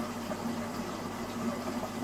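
Steady low hum of running aquarium equipment with a faint, even hiss of water beneath it.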